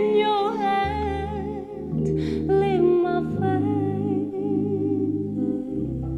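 A woman singing a slow melody with vibrato, accompanied by sustained piano chords that change every second or two.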